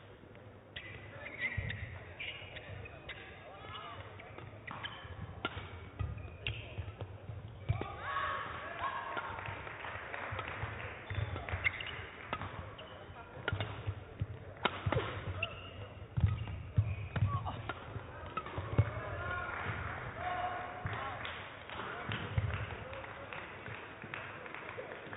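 Badminton rally: sharp racket strikes on the shuttlecock every second or two, with the players' footwork on the court mat.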